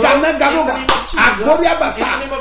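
A man's loud, sing-song preaching voice runs throughout, with one sharp slap a little under a second in.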